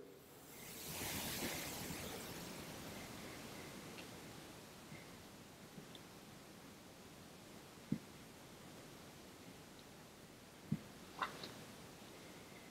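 Faint hiss in a very quiet room, then two soft single knocks a few seconds apart and a brief thin tick near the end, heard as something like a wet footstep.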